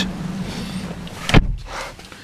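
A Vauxhall Astra's driver's door is pulled shut from inside with a single loud thud about two-thirds of the way through. After it the steady outside hum drops away, shut out of the cabin.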